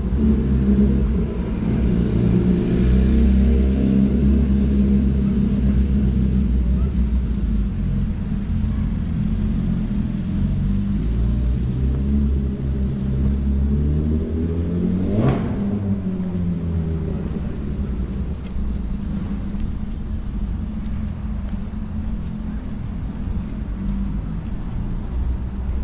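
City street traffic: a steady low rumble of car engines and tyres, with one car passing close by about fifteen seconds in.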